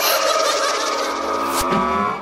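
Electronic club dance track at a breakdown: the kick drum drops out and a sustained, warbling, trilling effect with several trembling pitches holds in its place, with one low thump near the end.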